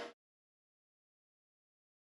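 Silence: a steady noise fades out at the very start, and then nothing is heard.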